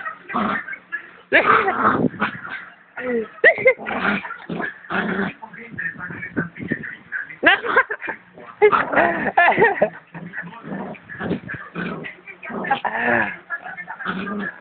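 Small white dog yipping and whimpering in short, irregular bursts while play-biting a person's hand.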